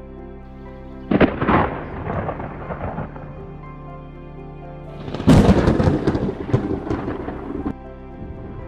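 Two thunderclaps. A sharp crack about a second in rumbles away over a couple of seconds. A louder crash about five seconds in rumbles for over two seconds, then cuts off suddenly.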